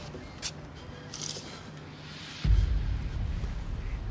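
Background drama score: quiet at first, then a deep low drone comes in suddenly about halfway through and holds.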